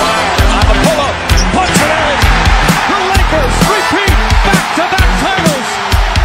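Basketball game sound: many short rubber sneaker squeaks on a hardwood court and ball bounces, mixed with music.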